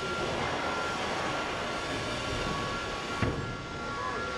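Steady mechanical hum of a factory hall: a continuous even noise with two faint steady high tones, dipping and changing briefly about three seconds in.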